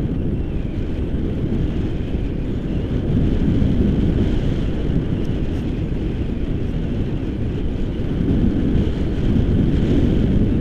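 Airflow buffeting the microphone of a handheld camera during paraglider flight: a steady, loud low rumble that swells a little a few times.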